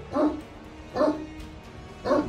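A dog barks twice, about a second apart, each bark short and falling in pitch, over quiet background music.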